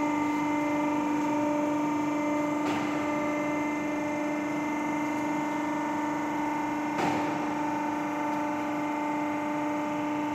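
Tilting gravity die casting machine running a dry cycle: a steady hum from its hydraulic drive as the die tilts back upright, with a knock about three seconds in and a sharper one about seven seconds in.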